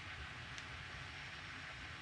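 Faint, steady room tone: a low hum and hiss with no distinct event.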